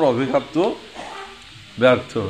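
A man's speaking voice trailing off at the end of a phrase, then a pause of faint steady hiss, and a short syllable near the end.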